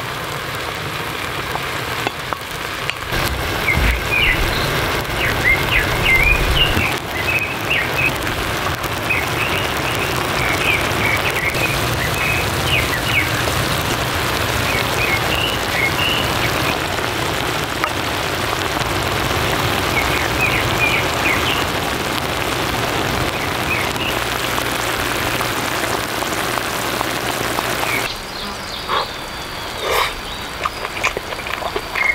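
Spicy seafood hot pot boiling in a foil-lined pan over a portable gas burner: a steady bubbling hiss with clusters of short high-pitched pops.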